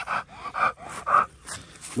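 A Rottweiler panting hard with its mouth open, a quick string of loud breaths, out of breath after bite work on a jute bite pillow.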